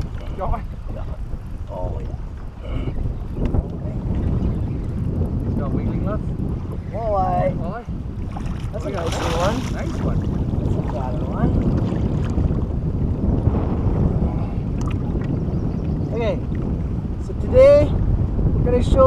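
Wind buffeting the microphone over water slapping against a small boat's hull, a steady low rumble, with a few short voice exclamations.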